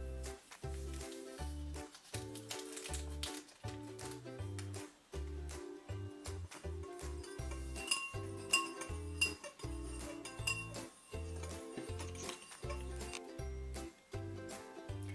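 Upbeat ukulele background music with a steady beat. Over it, a metal spoon clinks against the side of a ceramic bowl a few times, about two-thirds of the way through, as powder is stirred into water.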